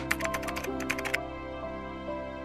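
Quick keyboard-typing clicks, about ten a second, stopping a little over a second in, over soft background music of held notes.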